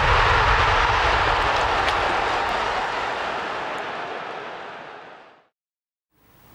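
Whoosh sound effect of a logo sting: a broad rushing noise that slowly fades away over about five seconds.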